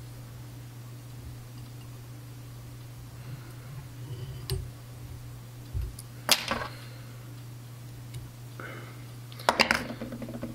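A steady low hum with faint handling sounds as a thread whip finish is tied at the head of a fly in a vise, with one sharp click about six seconds in and a few more clicks near the end.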